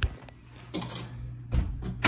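A phone handled close to a wooden door's edge: a sharp click at the start, then a soft knock and rustle just under a second in and a duller thump about a second and a half in, over a steady low hum.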